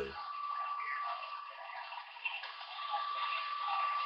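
CB base radio receiver hissing and crackling through its speaker on an open channel, the sound thin and narrow, with a steady whistle tone running through the static.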